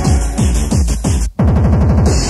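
Old-school acid and hardcore techno from a 1994 DJ mix, played from a cassette. A fast, pounding kick drum drops out for an instant about a second and a half in, then comes back as a rapid kick-drum roll.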